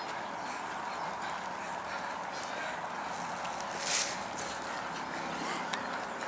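Footfalls of many runners on grass, with spectators' voices calling. A short rushing burst about four seconds in.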